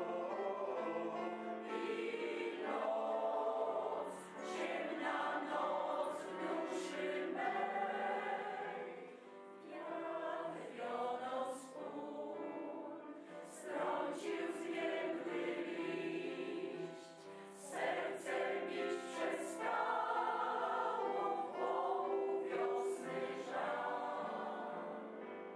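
A mixed choir of senior women and men singing together, in phrases with brief dips between them about ten, twelve and seventeen seconds in.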